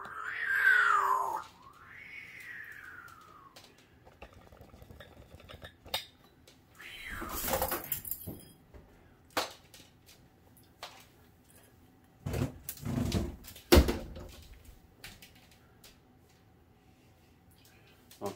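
African grey parrot giving a loud call that sweeps up and back down in pitch, then a fainter one, followed by scattered clicks, knocks and short bursts of rustling as it moves about in a cardboard box of shredded cardboard.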